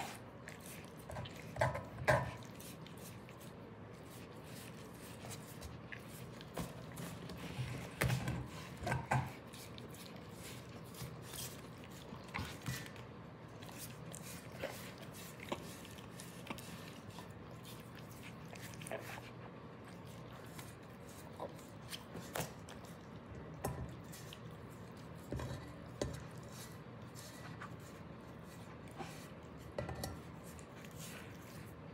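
A Belgian Malinois licking out an empty cast-iron skillet: irregular wet tongue laps with small clicks and knocks against the pan. A few louder clusters come about two seconds in, around eight to nine seconds, and again in the last third.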